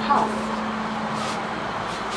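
The last word of an elevator's recorded Swedish voice announcement, "Biljetthall", then a steady low hum over street traffic noise coming in through the open elevator door. The hum stops just before the end.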